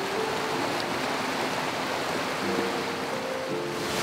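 Steady rush of an 18-metre waterfall close by, with soft background music: a few held notes near the start and again in the second half.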